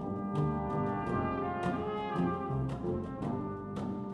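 Brass ensemble with percussion playing: sustained brass chords over regular drum strikes, about two a second.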